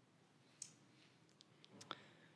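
Near silence with a few faint, sharp clicks: one about half a second in and a small cluster near the end.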